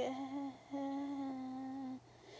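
A girl humming a steady, flat note twice, a short hum then a longer one: a thinking 'hmm' while she tries to remember something.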